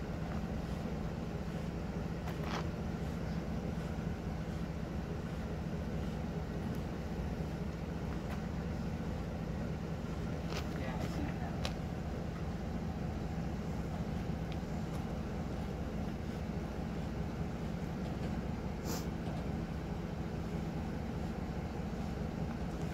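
Vehicle engine idling steadily, with a few faint clicks and knocks over it.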